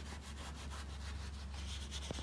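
Paper towel rubbed and dabbed over wet paint on paper: a faint, continuous scrubbing rustle.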